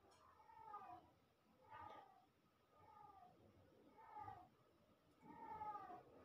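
A cat meowing faintly over and over: about five short meows, each falling in pitch, roughly one a second.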